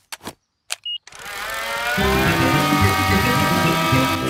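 Cartoon toy aeroplane's propeller engine: a few short clicks, then from about a second in a buzzing drone that starts up, grows louder and rises slightly in pitch.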